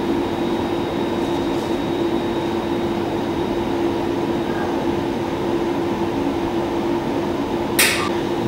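Steady machine hum with one constant low tone, from laboratory equipment running. A brief hiss near the end.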